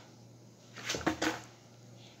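Skateboard kicked out from under the rider, tumbling over and landing upside down on a carpeted floor: a quick cluster of knocks about a second in.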